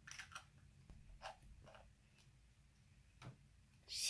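Near silence broken by a few faint clicks from a plastic bottle's screw cap being twisted shut.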